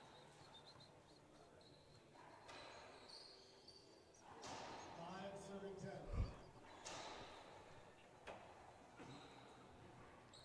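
Quiet court ambience: faint murmured voices and a few soft ball bounces on the hardwood floor as the server readies to serve, with a dull low thump about six seconds in.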